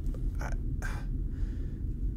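A couple of short creaks in the first second over a steady low rumble.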